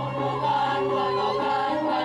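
Balinese gong kebyar gamelan, played by a children's ensemble, accompanying a group of voices singing held notes.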